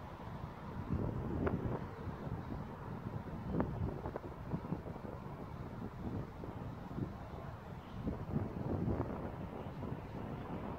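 Wind buffeting an outdoor microphone in irregular gusts. It makes a low rumbling noise that swells about a second in, around four seconds, and again near the end.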